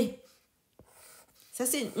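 A stylus drawing a short stroke across a tablet's glass screen: a faint, brief scratch about a second in, between words.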